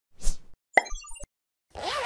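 Animated logo intro sound effects. A short pop comes first, then a sharp click with a quick run of high little blips, and near the end a whooshing pop with a swooping tone.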